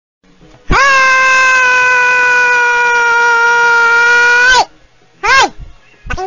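A high-pitched voice yelling one long, drawn-out "heeey", held for about four seconds with a slight fall in pitch, then a short downward cry about a second later.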